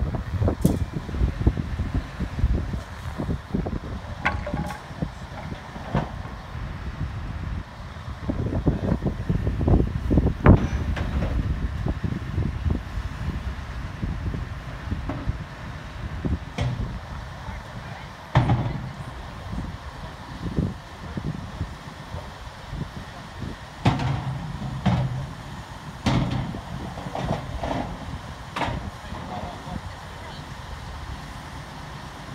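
Diesel engine of a lorry-mounted crane running, with workers' voices in the background and occasional sharp knocks as the load is handled.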